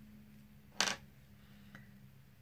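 A single sharp click of a plastic makeup bottle or cap being handled, about a second in, followed by a fainter tick, over a faint steady low hum.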